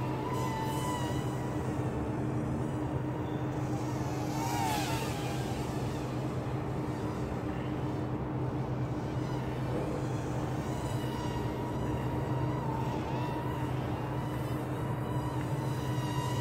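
Hubsan X4 H107D+ micro quadcopter's brushed coreless motors buzzing steadily as it hovers on altitude hold, the pitch wavering slightly with small throttle changes.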